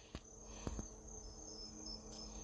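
Faint, high-pitched steady chirring of crickets, with a couple of soft clicks in the first second.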